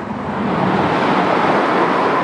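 A loud, even rushing hiss without speech, swelling slightly, with a faint rising whine near the end.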